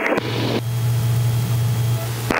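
Mooney M20K Encore's turbocharged six-cylinder engine idling on the ground, a steady low drone with hiss heard inside the cabin. It comes in just after the start.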